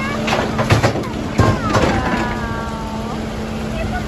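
Backhoe loader dumping a bucketful of broken pavement and dirt into a steel dump truck bed: two bursts of crashing and clattering within the first two seconds, over the steady hum of the idling engines.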